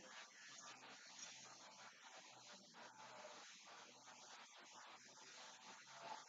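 Near silence: faint room tone and hiss.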